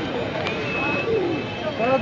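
Several people talking in a busy outdoor market, with background hubbub and a short, thin, high tone about half a second in.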